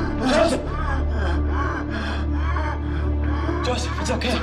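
A man gasping repeatedly in distress, short pitched breaths and cries, over a low steady music drone.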